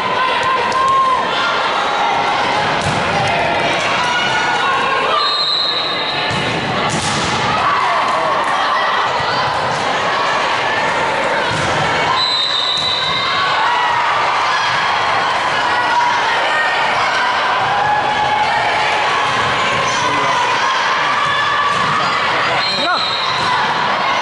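Indoor volleyball play: a volleyball being served and struck, with thuds and bounces, over steady chatter and some cheering from spectators in the gym.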